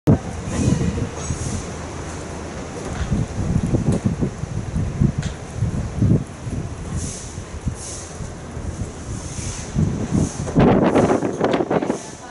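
A horse's hooves on a sand arena surface: dull, irregular thuds as it trots and canters, with wind noise on the microphone.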